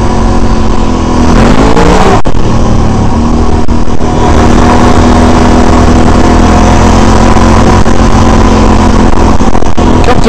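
Can-Am Renegade 800R XXC ATV's V-twin engine running under way on a dirt trail. It climbs in revs about a second in, then holds a steady pitch.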